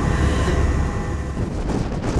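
Steady low rumble of a moving vehicle heard from inside it; the deepest part of the rumble drops away about a second and a half in.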